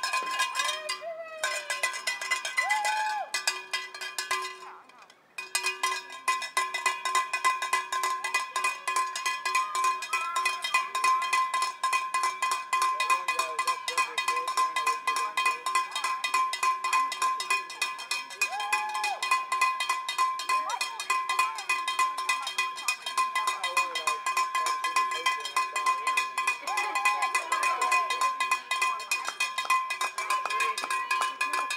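Handheld cowbell rung rapidly and without pause, a fast, even clanging, cheering on a runner coming in to the finish. It rings briefly at the start, stops for a moment about four seconds in, then keeps going to the end.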